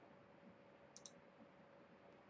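Near silence, with a faint computer mouse click about a second in.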